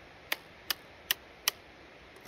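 Trekking poles clicked together four times, evenly about two and a half clicks a second, to warn off a rattlesnake.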